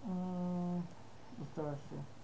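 A person's voice holding a steady hum-like 'mmm' for just under a second, then a short vocal sound with rising pitch about a second and a half in.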